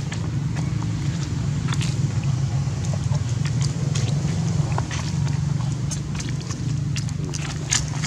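Scattered short clicks and crackles of dry leaf litter as macaques move about on the ground, over a steady low rumble.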